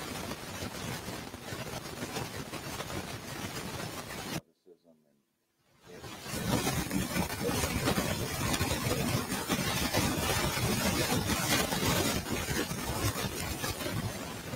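A steady, loud hiss of static on the live audio feed with a man's voice buried under it; the sound cuts out almost completely for about a second and a half about four and a half seconds in, then comes back louder.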